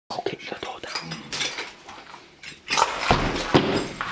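People moving through a corridor with handheld gear: a run of light clicks and clinks, with whispering. About two and a half seconds in it turns into louder rustling and handling with a few sharp knocks.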